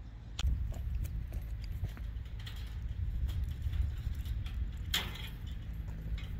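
Handling noise on a handheld camera's microphone, a low rumble throughout, with scattered small clicks and light jingling, the loudest click about five seconds in.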